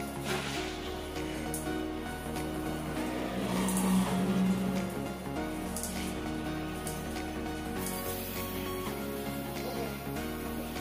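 Background music with a steady melody, and beneath it a faint hiss of water spraying from a handheld shower head onto tiles.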